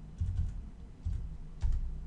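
A few separate keystrokes on a computer keyboard, typing out a short number.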